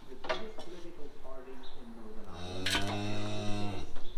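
A cow mooing once, a single low call of about a second and a half that drops in pitch as it ends. A short click comes near the start.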